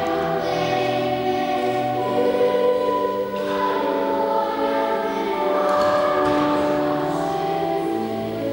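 A children's choir singing slow, sustained chords, the harmony shifting every second or two.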